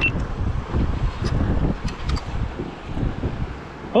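Wind buffeting the microphone, an uneven low rumble, with a few faint clicks.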